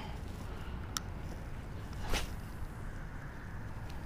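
A spinning rod being cast: a sharp click about a second in, then a brief swish of the cast about two seconds in, over a steady low background rumble.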